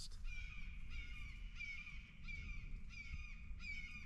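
Hawks calling overhead: a series of short, high-pitched calls repeated roughly twice a second.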